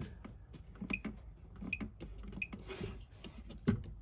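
Button presses on a motorhome's control panel: three short electronic beeps about three-quarters of a second apart as the display steps through its screens, with soft clicks and handling noise around them.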